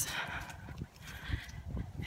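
A person breathing in while walking, followed by a few soft low thumps of footsteps.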